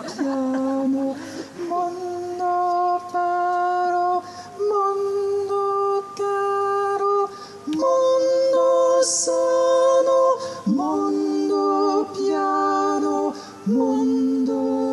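A singer's voice through a microphone and PA singing a slow classical melody, holding each note for a second or two before stepping to the next, with short breaks between phrases and upward scoops into a few notes.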